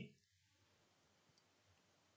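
Near silence: faint room tone with one faint click about one and a half seconds in, a computer mouse click advancing the slide.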